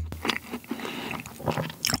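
Close-miked chewing of a yellow-cheese fat macaron (ttungcaron) with a cheese filling: soft mouth sounds with scattered small crunches and clicks.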